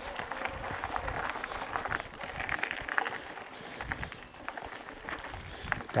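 Mountain bike knobby tyres rolling over a loose gravel and stone track, with a steady crunching rattle and many small clicks from stones and the bike. A brief high-pitched electronic beep sounds about four seconds in.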